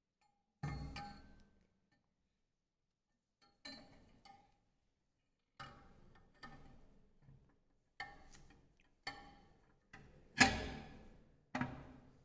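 Metal jet stack of a diffusion pump clinking and knocking against the pump body as it is seated by hand inside it: about ten separate knocks, each ringing briefly, the loudest near the end.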